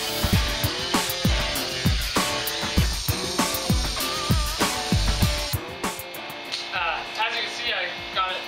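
Background rock music with a drum beat and guitar. The drums and bass drop out about five and a half seconds in.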